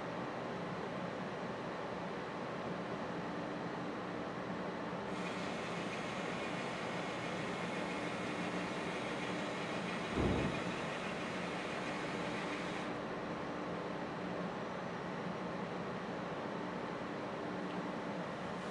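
Automated bottle measurement machine running with a steady hum. A higher hiss comes in about five seconds in and stops around thirteen seconds, and a single dull thump comes about ten seconds in as the bottle's turntable stage moves.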